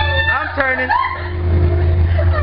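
Several people's voices exclaiming and calling out in the dark, over a steady low hum.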